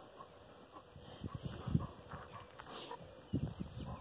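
Faint, irregular sounds of a dog right at the microphone, growing a little louder near the end.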